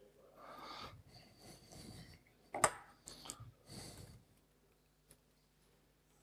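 A man's faint breathing close to the microphone, in soft separate breaths, with one short louder sound about two and a half seconds in; it stops a little past four seconds in.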